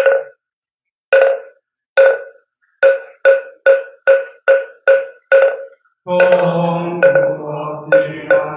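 Moktak (wooden fish) struck: three knocks about a second apart, then a faster run of about two knocks a second, the beat that leads the bows. About six seconds in, a group of voices starts Korean Buddhist chanting in unison, kept in time by the moktak.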